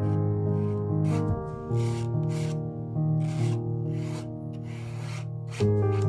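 Steel palette knife scraping and spreading thick acrylic paint across a canvas, short rasping strokes about two a second.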